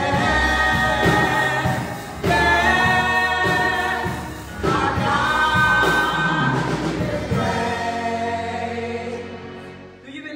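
Gospel praise team of several singers on microphones singing in harmony over a live band with drums. The last held chord fades away over the final few seconds.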